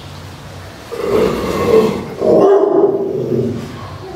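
Old Rottweiler growling twice, each growl long and low, in reaction to a picture hanging on the wall.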